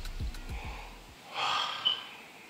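The track's falling deep bass notes fade and cut off about a second in, then a person gives one loud, sharp gasp of breath, followed near the end by a short sharp high chirp.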